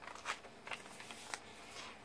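Faint rustling of paper pages being turned and handled in a handmade junk journal, with a few soft ticks of paper.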